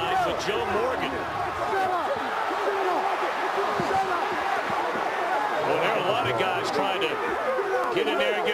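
Many voices shouting over one another at once: football players yelling during an on-field shoving match, with the stadium crowd behind.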